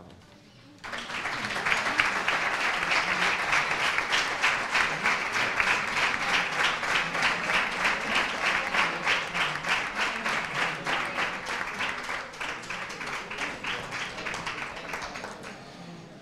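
An audience applauding: the clapping starts about a second in, holds steady, then thins out and fades near the end.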